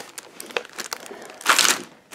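Plastic-wrapped packs of cherry tomatoes crinkling as they are lifted out of a reusable shopping bag, with light rustling and then a louder crinkle about one and a half seconds in.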